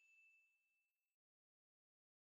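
Near silence, with only the faint dying ring of a single high ding from the logo sting, which fades out about a second in.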